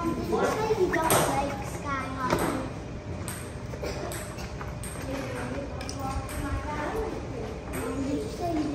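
Young children's voices and unintelligible chatter, with a few light knocks.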